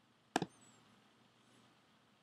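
A single short, sharp computer click about a third of a second in, from the controls used to add energy to the atom simulation; otherwise near silence.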